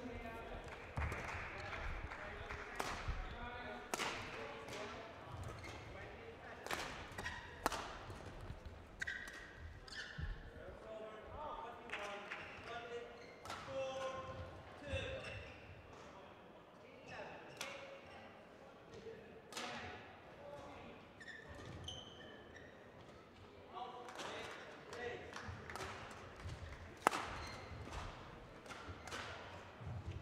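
Badminton hall ambience: sharp racket strikes on shuttlecocks from rallies on nearby courts, echoing in the large hall, with faint distant voices.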